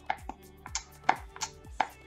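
The plastic push-down pump top of an E.L.F. Hydrating Bubble Mask jar clicking sharply as it is pressed again and again, about six clicks in two seconds, while the gel is slow to come out. Soft background music with a low beat plays underneath.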